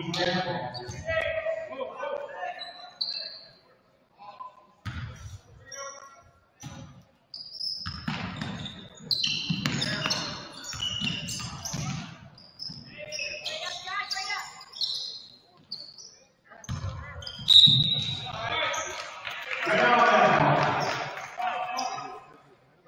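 Indoor basketball play on a hardwood court: the ball bouncing, sneakers squeaking in short high chirps, and players' and spectators' voices echoing in the gym, with a louder burst of voices near the end.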